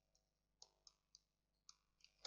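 Near silence broken by four very faint, sharp clicks: a stylus tip tapping on a tablet while writing figures.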